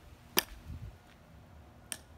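A golf club striking a Birdie Ball, a hollow limited-flight practice ball, off a strike mat in a chip swing: one sharp, loud click about half a second in. A second, fainter click follows near the end.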